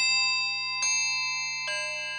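Music of bell-like chime notes struck one after another, about one a second, each ringing on and fading; the last note is lower.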